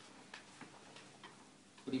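A few faint, light clicks at uneven spacing over quiet room tone, until a man starts speaking near the end.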